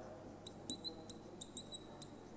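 Marker squeaking on a whiteboard as digits are written: a series of short, faint, high-pitched squeaks.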